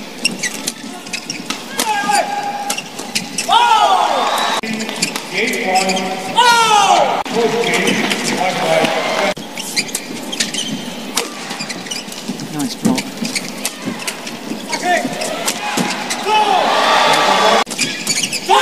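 Badminton rally on an indoor court: repeated sharp racket hits on the shuttlecock and squealing shoe squeaks on the court floor, over crowd noise and shouts.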